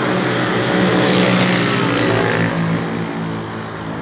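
Road vehicle engine hum with tyre and road noise on a highway. The noise swells over the first two seconds, then fades away.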